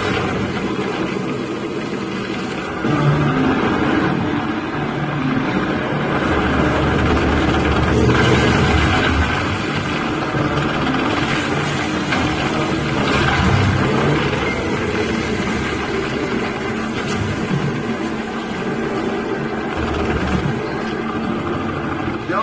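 A vintage motor car's engine running in a dense film sound mix, with a steady low rumble throughout.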